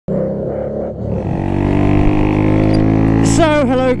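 2003 Baimo Renegade V125 motorcycle's 125cc V-twin engine running with a steady drone. A man starts talking near the end.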